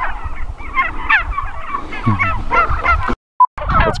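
A flock of domestic white turkeys calling and gobbling in a busy, overlapping chorus of short warbling calls. About three seconds in the sound cuts out briefly around a single short beep, then the turkey calls resume.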